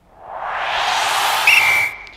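Title-graphic transition sound effect: a swelling whoosh that builds over about half a second, holds, and cuts off sharply near the end. About one and a half seconds in, a short high whistle-like ping enters, the loudest part, and rings on briefly after the whoosh stops.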